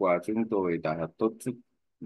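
Speech only: a voice speaking Vietnamese in short phrases.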